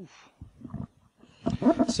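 A man's short, low vocal sound at a microphone that falls in pitch, then a few soft murmurs, with speech starting near the end.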